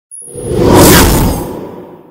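Whoosh sound effect for an animated logo sting: a rushing swell that peaks just under a second in and then fades out.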